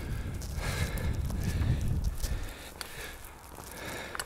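Footsteps on loose rock, with a few faint scattered clicks, and a low rumble on the phone's microphone that eases about halfway through.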